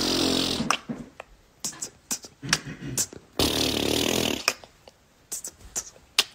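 A man beatboxing a beat with his mouth: two long buzzing, hissing bass sounds of about a second each, with short clicks and pops between them.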